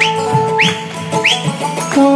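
Instrumental break in a song's backing music: a held note over a steady beat, with three short whistle-like swoops that rise and fall, about two thirds of a second apart.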